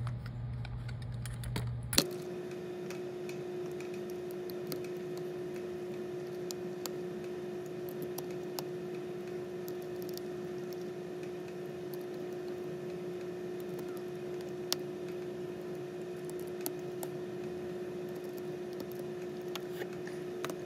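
Faint, scattered small clicks of a precision screwdriver working the tiny tri-point screws of an iPhone's internal bracket, over a steady hum with a held low tone. A single sharp click about two seconds in, where the background changes.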